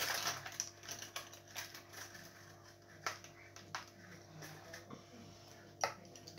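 Scattered light clicks and knocks of small objects being handled, most frequent in the first second and sparser after, over a faint steady hum. A brief voice sound comes just before the end.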